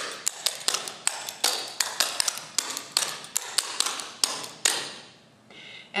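Clogging shoe taps striking a hardwood floor in a quick, even run of clicks, the dancer stepping four clogging basics (double step, rock step); the taps stop a little before the end.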